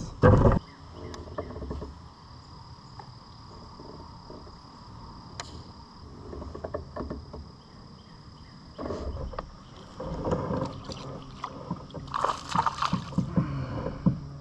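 Handling noise in a plastic fishing kayak on the water: a sharp loud knock right at the start, then scattered small knocks and rustles, with busier splashing and clattering from about nine seconds in and again near the end.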